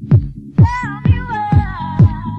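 Classic house DJ mix: a steady four-on-the-floor kick drum about twice a second over a bass line. About half a second in, a high, bending melodic note enters, then settles and is held.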